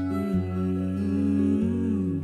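Live acoustic guitar under a woman's voice humming a long held note, which slides down at the end.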